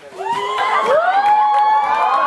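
A crowd of children shouting and cheering in long, high, held cries, many voices at different pitches. It breaks out suddenly just after the start and stays loud.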